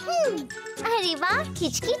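A young girl's cartoon-character voice speaking in lively, swooping tones over light background music.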